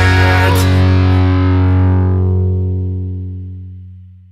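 The end of a punk rock song: the band stops on a last hit, leaving a distorted electric guitar chord held and ringing out, fading away over the last two seconds.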